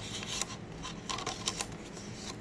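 A string of short, light clicks and taps, with a quick cluster of them around the middle, over a steady low hum.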